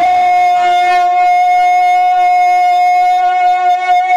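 A naat reciter's voice holding one long, steady high sung note.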